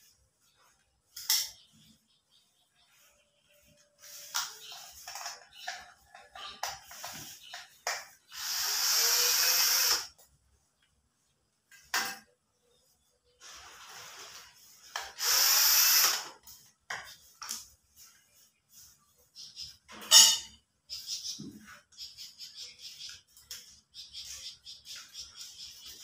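Small cordless power driver running in two bursts of about two seconds each, backing out the screws of a wall switch and outlet. Short clicks and knocks from handling the fittings come between the bursts.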